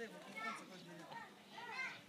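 Faint children's voices calling and shouting at a distance: a short call about half a second in and a louder one near the end.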